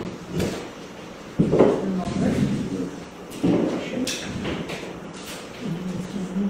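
Indistinct voices in a large hall, with two sharp knocks: one about a second and a half in and one a little past halfway.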